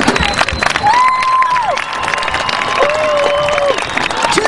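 Stadium crowd applauding and cheering, with a couple of long held shouts over the clapping.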